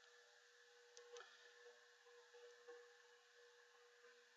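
Near silence: room tone with a faint steady hum and a few faint clicks about a second in.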